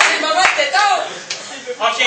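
Men's voices exclaiming in short bursts, with a sharp clap about half a second in and a fainter one a little after the one-second mark.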